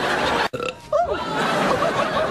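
Studio audience laughing, broken by a sudden cut about half a second in.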